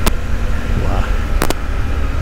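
Suzuki V-Strom 800's parallel-twin engine running on the move, a steady low rumble mixed with riding noise, with two sharp clicks, one right at the start and one about a second and a half in.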